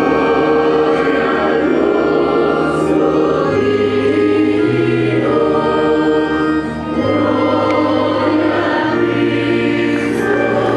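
Church choir singing sustained chords over an organ, with the organ's bass note changing every second or two.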